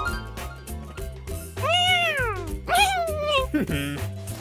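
Cartoon background music with a steady bass line. About halfway through, a character gives wordless vocal calls: two long ones that each rise then fall in pitch, the second wavering, then a short drop.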